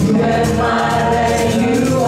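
A small church worship team singing a gospel praise song in several voices into microphones, over instrumental accompaniment.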